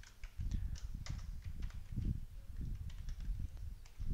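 Typing on a computer keyboard: irregular keystroke clicks with dull thumps from the keys bottoming out.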